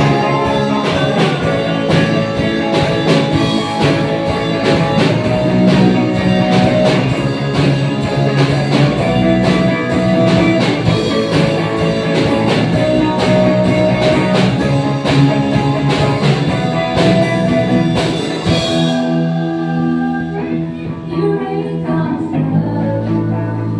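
Live worship band playing: drum kit, electric guitars and a singer on microphone. The drums stop about three seconds before the end, leaving held guitar chords and voice.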